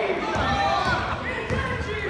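Overlapping shouts from spectators and players in a gym, with a basketball bouncing on the hardwood court and a few short knocks.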